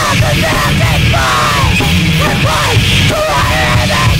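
Live heavy punk rock band playing: a vocalist singing over bass guitar and drums, loud and dense.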